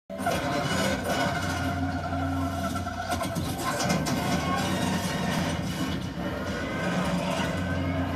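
Action-movie soundtrack playing from a television: music over a steady low drone that drops away for a few seconds in the middle and comes back near the end.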